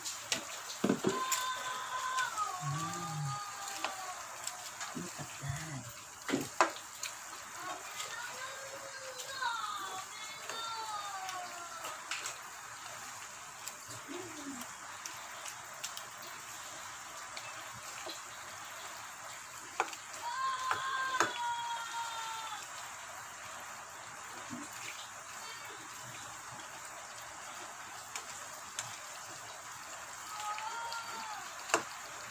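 A spatula stirring pork, potatoes and cabbage in a wok of simmering pochero sauce: wet sloshing with occasional clicks of the spatula against the pan. Faint voices come and go in the background.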